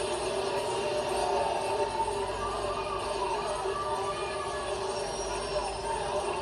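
Steady broadcast background noise of a televised track race, heard through a TV speaker, with a faint voice in it.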